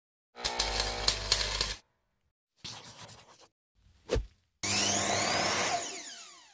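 Intro sound effects of power tools and sawing: a few separate bursts of machine and cutting noise with silences between them, then a short thump. The loudest burst comes last, about four and a half seconds in, with sweeping pitch, and fades out.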